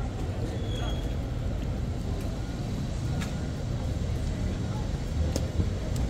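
City street background: a steady low rumble of road traffic, with a few faint clicks.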